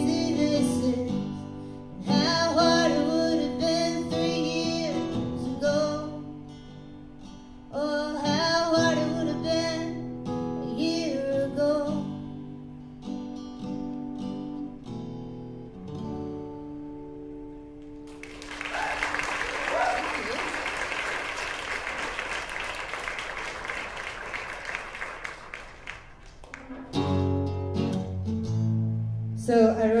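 A woman singing with acoustic guitar, the song ending about halfway through with the last guitar notes ringing out. An audience then applauds for several seconds, and guitar strumming starts again near the end.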